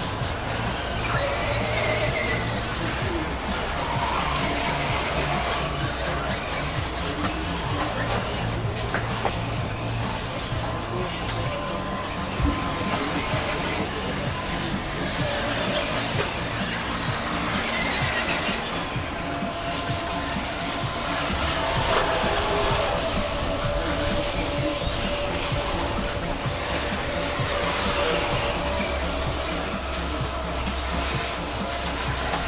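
Music over a loudspeaker mixed with radio-controlled model buggies racing, their engines rising and falling in pitch as they rev around the track.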